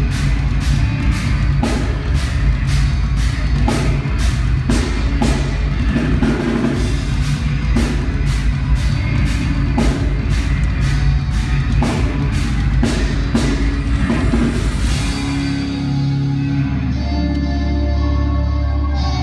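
Live rock band playing loud: a drum kit keeping a steady cymbal beat over heavy bass and electric guitar. About fifteen seconds in the drums stop and sustained held notes ring on.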